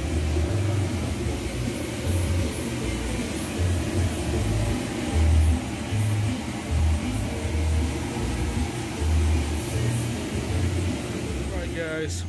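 Bounce house's electric inflator blower running steadily: a continuous rush of air with an uneven low rumble.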